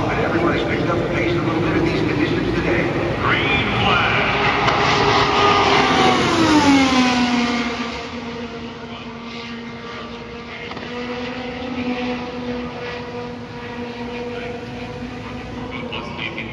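An IndyCar's 2.2-litre twin-turbo Honda V6 at full qualifying speed approaching and passing. Its high engine note climbs, peaks about six to seven seconds in, then drops sharply in pitch as the car goes by, leaving a fading steady engine tone.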